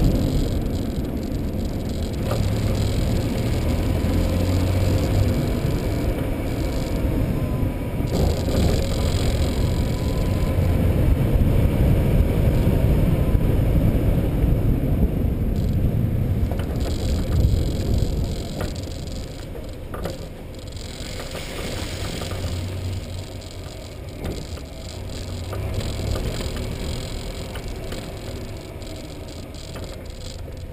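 Steady low rumble of a vehicle rolling over the road, picked up by a camera mounted on it, with a few short rattles and knocks. It gets quieter a little past halfway.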